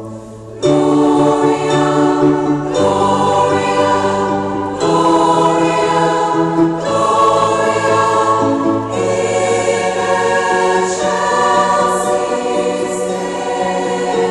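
A large choir singing in a big stone church, holding long sustained chords that change about every two seconds. A short pause comes at the very start, and full voices come back in less than a second in.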